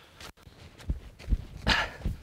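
Footsteps on soft mud and leaf litter: irregular low thuds, about two or three a second, with a short breathy puff near the end.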